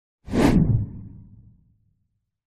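A whoosh sound effect with a deep low rumble for an animated logo sting. It comes in suddenly about a quarter second in and fades away over about a second and a half.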